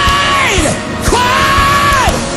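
Live gospel music: a voice belting long, high held notes with the band behind it. Each note slides up into its pitch and falls away at its end; one note breaks off just before the second mark and another is held through the second half.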